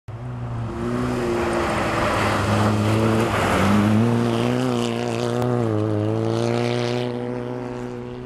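A rally car's engine held at high revs as the car slides on the ice. Its pitch dips and climbs again as the throttle is worked, and it is loudest as the car passes close about halfway through.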